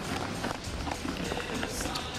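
Footsteps of several people running on a paved road, with faint voices calling.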